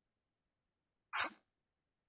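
A single short, breathy burst from a person about a second in, with silence around it.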